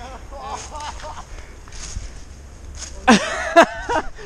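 Hurried footsteps through fallen leaves as people run on foot through woodland, with voices and a loud shout about three seconds in, followed by a sharp click.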